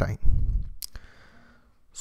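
A man's voice ends a word, followed by a breath and a single short mouth click a little under a second in, then quiet.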